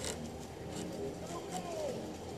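Faint, distant voice calling once near the end, with a soft click just at the start.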